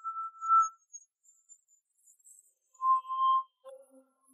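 Sparse background score: a few clear, ringing single notes, each held under a second, with the notes stepping lower toward the end.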